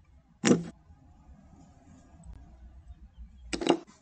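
Chess software's move sound effect: two short, sharp clacks about three seconds apart, each as a piece is captured on the on-screen board.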